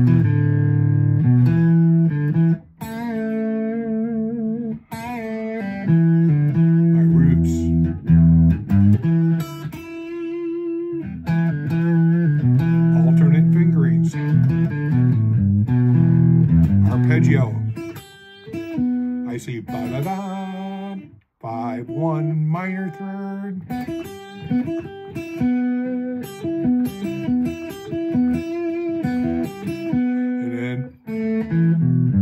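Thinline Telecaster-style electric guitar played in open-position E minor: a run of blues phrases mixing single notes and pull-offs, with some notes bent upward and others held with vibrato. The playing stops briefly a couple of times between phrases.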